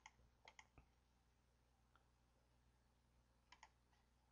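Near silence, broken by a few faint computer mouse clicks in quick pairs, near the start and again near the end.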